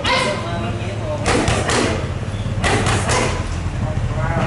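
Boxing gloves smacking a trainer's focus mitts and belly pad: one hit at the start, then two quick combinations of about three punches each, with voices among the strikes.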